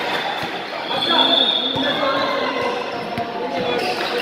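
A basketball being dribbled on an indoor court, irregular bounces, with players' voices calling out, echoing in a large hall.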